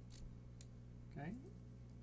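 Two faint, sharp metallic clicks, about half a second apart, from a key and a solid brass profile lock cylinder being handled and worked, over a steady low hum.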